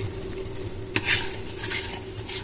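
Metal spoon stirring and scraping a thick cocoa and condensed-milk paste in a stainless steel saucepan, with a sharp tap of spoon on pan about a second in. The paste has set too thick from too much cocoa for the milk.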